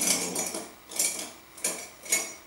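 Painting tools clinking and rattling as they are rummaged through in search of a fine brush: a few sharp clinks, each with a short ring.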